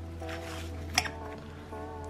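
Quiet background music with sustained notes, over a steady low hum. There is one light metallic click about a second in.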